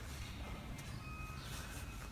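Quiet pause with a low steady hum and faint rustling of a crochet hook working yarn; a faint short tone sounds about a second in.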